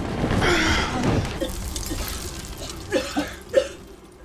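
Burning gas on a man's arm, a loud rush of flame that dies away over the first second or so, followed by a few short pained gasps.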